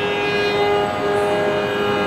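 Carnatic violin playing long, held notes in raga Bilahari.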